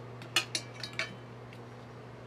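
Steel knife and fork clinking and scraping against a china plate while cutting up a samosa. There are four sharp clinks in the first second, then the cutlery goes quiet.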